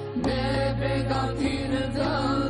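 Sung ilahi, an Islamic devotional song, with the melody carried by voice over a steady low held drone.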